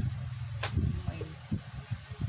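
A single sharp click, about two-thirds of a second in, over a low steady hum, with a man's voice briefly saying a word.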